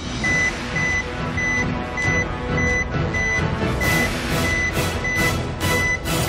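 Game-show weigh-in reveal effect: a steady high electronic beep, about one every 0.6 s, over tense, drum-heavy suspense music, building toward the scale reading. Sharper percussive hits join in over the last two seconds.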